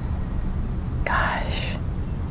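A short breathy whisper about halfway through, over a steady low rumble.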